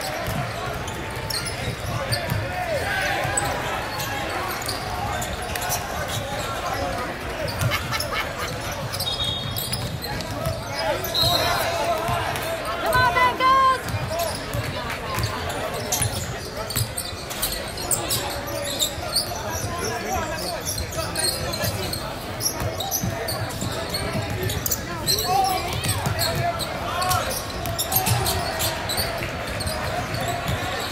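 Live basketball play in a gym: the ball dribbling on a hardwood court with a few short sneaker squeaks, under the calls and chatter of players and spectators, all echoing in a large hall.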